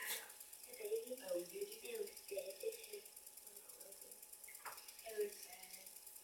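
Quiet, indistinct talk between two people at a distance, with a sharp click near the start and another a little before the five-second mark.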